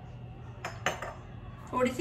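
Two quick glassy clinks about a quarter of a second apart, from a glass spice jar being handled and set down on the kitchen counter.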